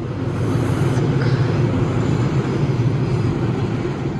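A train passing on an elevated railway viaduct: a loud, steady low rumble.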